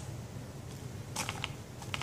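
Handling noise from a tablet in a folio case held in the hand: a few short, light clicks and taps in the second half, over a low steady hum.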